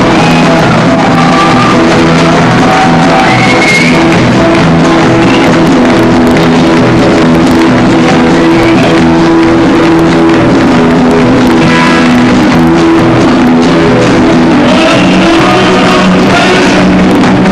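Live country band playing loud: strummed acoustic guitar with a drum kit and other instruments.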